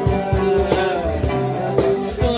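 Acoustic guitar strummed over a steady beat slapped on a cajon, in an instrumental stretch between sung lines.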